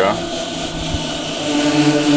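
A steady low mechanical hum with a few level tones, after a short spoken 'ja' at the start.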